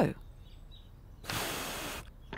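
A person blowing a steady stream of breath over the top of a curled sheet of paper. The breath starts a little past halfway and lasts just under a second. It is a lift demonstration: the air skimming over the paper makes it rise.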